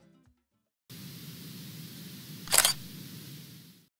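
Background music trails off, then after a brief silence a logo sting sound effect starts: a steady hiss with one loud, sharp burst about two and a half seconds in, fading out at the end.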